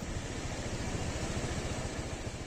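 A steady low rumble with a faint hiss, like background engine or traffic noise.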